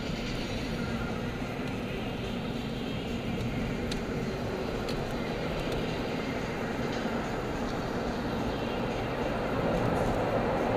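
Steady road and engine rumble heard from inside a moving car's cabin, growing a little louder near the end.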